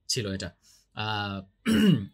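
A man's voice in short spoken bursts, with a louder, rough vocal sound with falling pitch near the end.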